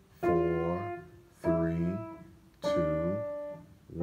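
Piano played one note at a time in a slow five-finger warm-up, four single notes struck at a steady beat about a second and a bit apart, each ringing and fading before the next.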